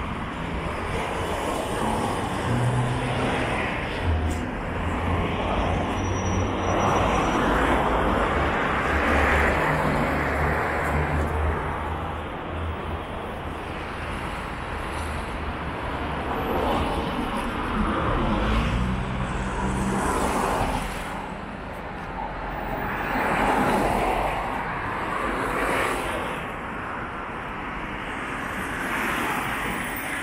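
City street traffic: vehicles passing one after another, each swelling and fading. A low engine hum from a heavier vehicle runs for several seconds in the first half and briefly again just after the middle.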